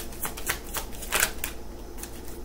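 Deck of oracle cards being shuffled by hand: a quick run of crisp card snaps, loudest a little past a second in, stopping about halfway through.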